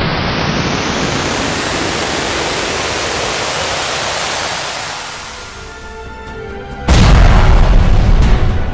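Cinematic intro sound design: a noise whoosh sweeping upward in pitch that fades away, leaving faint held music tones, then a sudden loud boom hit about seven seconds in.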